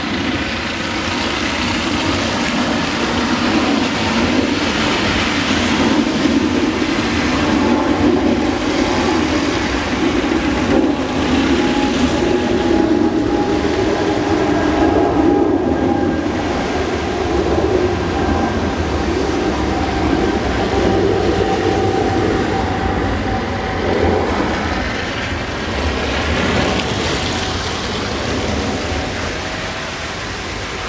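A loud, steady rumble with faint humming tones, swelling and easing slowly over many seconds, like a passing train or heavy traffic.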